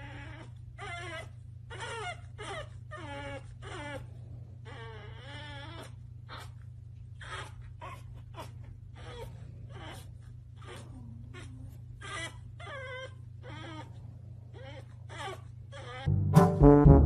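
Pug puppy whining and crying inside a crate: a long run of short, high whimpers that bend up and down in pitch, with brief gaps between them, over a steady low hum.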